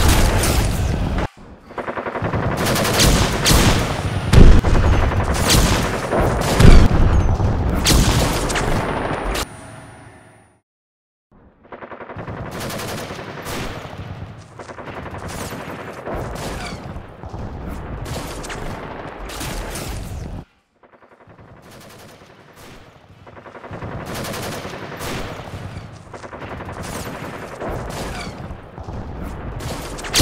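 Rapid, machine-gun-like gunfire sound effects laid over a toy-blaster shootout. The firing is loudest in the first ten seconds, breaks off into silence, then comes back quieter, with another short break near twenty seconds.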